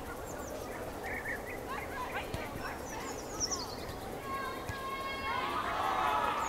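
Birds chirping over a steady outdoor background, with quick high falling chirps a little past the middle. About four seconds in a pitched, voice-like call with several tones comes in and grows louder toward the end.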